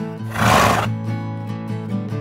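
Strummed acoustic guitar music, with a short, loud whinny sound effect about half a second in.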